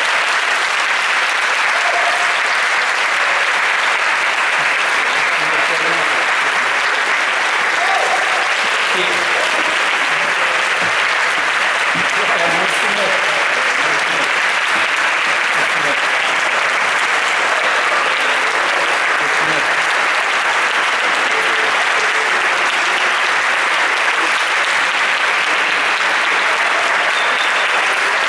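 Concert audience applauding, a steady, sustained clapping.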